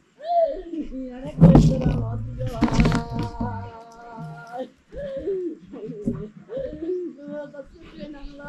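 A woman's voiced mourning lament: wavering, rising and falling wails of grief for a relative who has just died. A loud rumbling burst of noise cuts across it between about one and a half and three seconds in.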